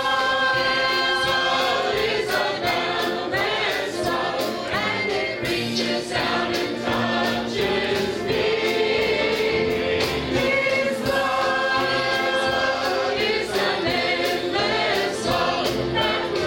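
Mixed choir of men and women singing a gospel song in long held chords, with a steady beat underneath.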